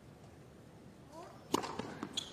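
Tennis serve: after a hushed pause, a sharp crack of the racket strings striking the ball a bit past halfway, followed by a smaller knock of the ball bouncing on the hard court.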